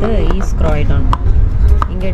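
Inside a moving passenger train carriage: a steady low rumble from the running train, with irregular sharp clicks and knocks from the carriage.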